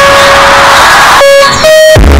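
Music boosted until it clips into harsh distortion: held melody notes buried in a thick wash of distortion noise, with a brief dip about one and a half seconds in.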